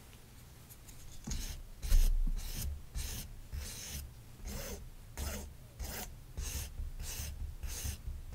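Toy knife rubbing and scraping over a soft fabric toy bread roll, spreading a condiment piece in repeated short strokes, about two a second, starting about a second in. A louder knock comes about two seconds in.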